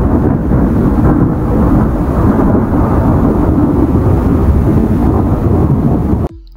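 Thunder sound effect: a loud, steady low rumble.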